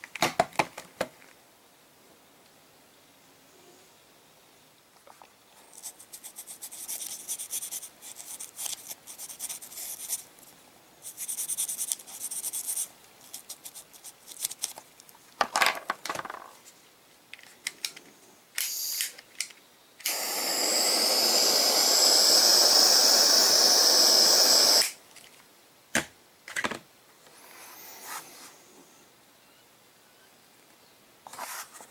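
A Bernzomatic portable torch burning with a steady hiss for about five seconds, starting suddenly and cutting off sharply: it is shrinking heat-shrink tubing over a crimped and soldered wire ring connector. Before it come scattered clicks and scraping rustles as the tubing and connector are handled.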